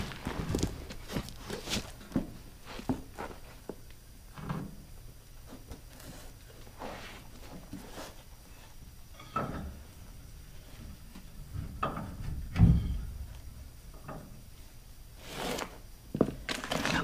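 Irregular knocks, clunks and scuffs of hands-on work under a pickup's rear axle while a new leaf spring is worked into place, with the loudest low thump about twelve and a half seconds in.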